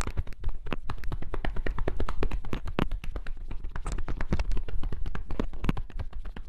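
Hands tapping and patting quickly on a leg in denim jeans as massage strokes, a dense, uneven run of short sharp strikes at several a second.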